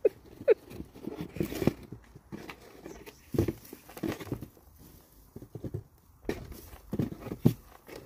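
Soil, straw and potatoes tipped out of a fabric grow bag into a plastic tub: rustling of the bag and dry straw, with scattered dull thuds as clumps and potatoes drop in.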